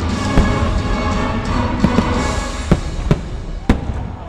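Aerial fireworks shells bursting in several sharp bangs over the fireworks show's music soundtrack, which plays steadily beneath them.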